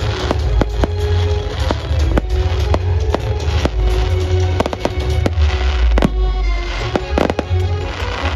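Fireworks display: aerial shells going off in irregular booming bangs over a steady low rumble, with a loud bang about six seconds in and a quick run of crackles shortly after. Music plays underneath.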